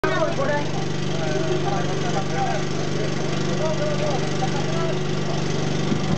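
Ride-on lawn mower's engine running steadily, with people talking over it.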